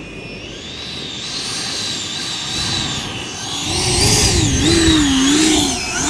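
The 90 mm electric ducted fan of an E-flite Viper RC jet, driven by an 8S motor, whining under partial throttle on a crow-flaps landing approach. The whine wavers up and down in pitch and grows louder about four seconds in as the jet comes close and touches down.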